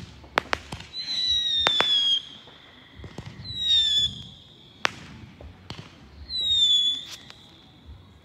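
Fireworks going off: sharp cracks and pops, and three high whistles that each fall slightly in pitch, at about a second in, around the middle, and near the end, the whistles being the loudest sounds.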